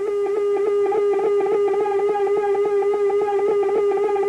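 A steady electronic tone played through a phase shifter effect pedal, its overtones slowly wavering as the phasing cycles, with a fast even flutter throughout.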